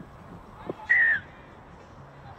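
Referee's whistle, one short blast about a second in, signalling the try just scored.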